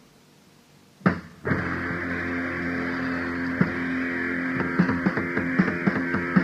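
A moment of low tape hiss, then a sharp attack about a second in and a loud electric guitar chord that rings on steadily, with drum hits coming in and growing more regular toward the end: a punk rock song starting on a band's practice recording.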